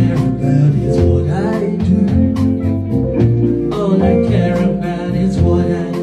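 A live soul-jazz band playing: a man singing into a microphone over keyboard, guitar and drums.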